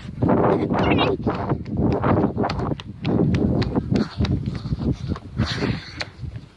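A boy running hard with a handheld phone: quick footfalls, about two to three a second, and heavy breathing close to the microphone.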